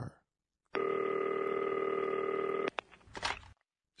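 A telephone rings once, a steady ring of about two seconds, then cuts off with a click as it is answered, followed by a brief handling noise.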